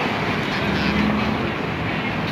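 Steady city road-traffic noise, with the low drone of a vehicle engine nearby.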